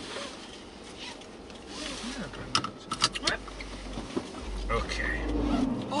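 Low rumble of a Subaru Forester's engine and tyres heard from inside the cabin while driving on a snowy road, growing louder in the second half. A few sharp clicks come about two and a half to three seconds in.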